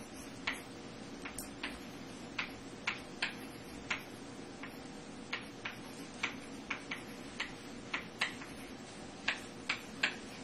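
Chalk tapping and clicking against a blackboard while writing and drawing: short, sharp taps at an irregular pace, about two a second, over a faint steady hum.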